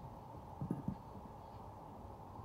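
Two soft, dull thumps about a fifth of a second apart, roughly a third of the way in, over a steady low background hum.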